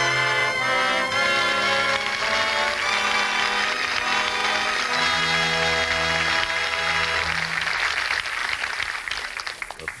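Orchestral curtain music closing an act of a radio drama: sustained chords, with a low note pulsed four times about halfway through, dying down near the end.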